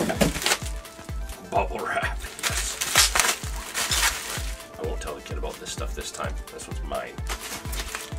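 Background music with a steady beat of about three pulses a second. Over it comes rustling and crinkling from handling plastic-wrapped tackle packaging, loudest about three seconds in.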